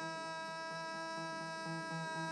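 Live blues band playing softly: one long held note rings steadily, with a low note pulsing underneath about three to four times a second.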